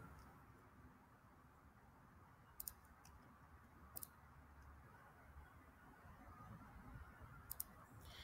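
Near silence with a few faint computer mouse clicks: a quick double click about two and a half seconds in, a single click at four seconds, and another double click near the end.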